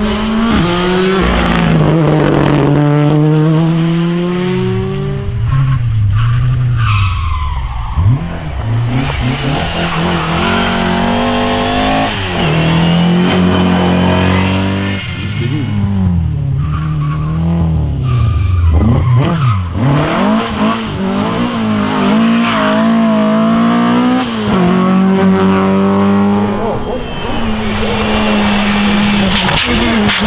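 A series of rally cars, among them a Ford Fiesta rally car, passing at speed one after another. The engine notes repeatedly climb and drop through gear changes, with tyre and loose-surface noise, and there is a sharp crack about eight seconds in.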